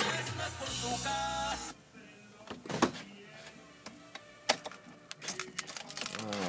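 Music playing from the car's aftermarket in-dash head unit cuts off suddenly a little under two seconds in as the unit is powered down. A few light clicks and knocks follow.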